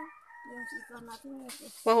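A rooster crowing once: one drawn-out call of about a second that falls slightly in pitch at the end.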